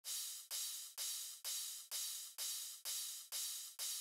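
Background music intro: a cymbal-like hiss struck in an even beat, about two hits a second, each fading away, with no melody or bass under it.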